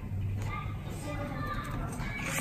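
Faint voices in the background over a steady low hum, with no clear words.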